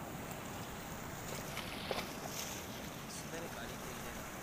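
Wind buffeting the microphone over the steady rush of sea water surging through a breached embankment, with a brief knock about two seconds in.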